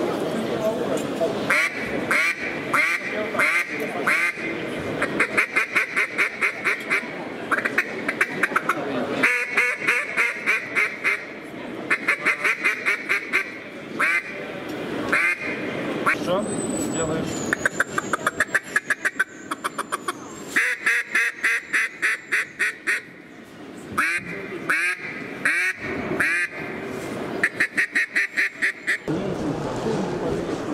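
Hand-blown duck call sounding runs of quacks, some as separate spaced quacks and some as fast rattling chatter, broken by short pauses. A faint thin high whistle sounds for a few seconds in the middle.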